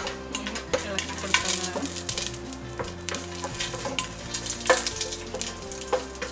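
Whole spices and bay leaves sizzling and crackling in hot ghee in a nonstick pot, stirred with a plastic spoon, with sharper spits and scrapes now and then.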